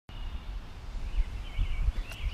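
Outdoor ambience: an uneven low rumble on the microphone with faint bird chirps above it.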